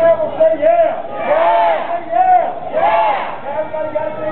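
Voices singing and shouting a chant, with two long, loud shouted calls about a second and a half in and again near three seconds.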